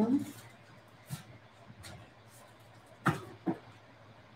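A slow, faint ujjayi inhale, the breath drawn through a narrowed throat. Near the end come two short sharp sounds about half a second apart.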